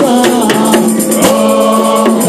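Gospel praise-and-worship singing: a lead singer with a group of backing vocalists singing into microphones, with percussion hits keeping time.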